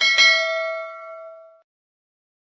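Notification-bell sound effect: a bright bell chime struck twice in quick succession, ringing and fading away within about a second and a half.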